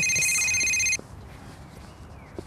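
Electronic telephone ringing: a high, steady electronic tone lasting about a second that cuts off suddenly.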